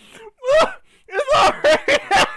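A man laughing hard in several loud, high-pitched bursts that start about half a second in.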